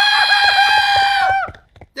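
A cartoon character's long, high-pitched scream of fright, held on one note with a fluttering wobble for about a second and a half, then breaking off.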